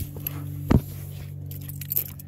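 Steady low hum of the Chrysler 300 SRT8's 6.1-litre HEMI V8 idling, with a sharp click under a second in and the click of the driver's door being opened near the end.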